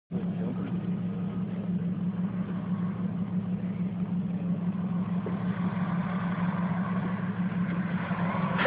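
A vehicle engine idling steadily, an even hum with no revving.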